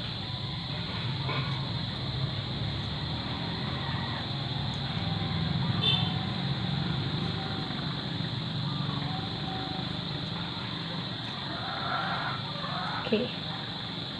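Steady low background hum with faint voices in the distance.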